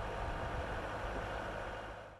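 Steady outdoor background noise, a low rumble with a hiss over it, with no distinct events, starting to fade near the end.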